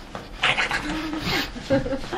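A man's voice making wordless sounds: a breathy rush of air about half a second in, then short voiced tones.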